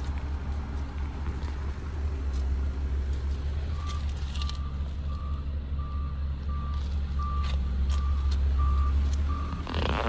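A steady low rumble with, from about four seconds in, a short electronic beep repeating about twice a second. Near the end a car door swings shut with a thump.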